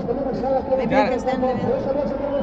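People talking: voices throughout, with no other sound standing out.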